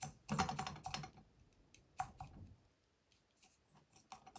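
A run of sharp clicks and taps: a quick flurry in the first second, two more clicks about two seconds in, then a few faint ticks.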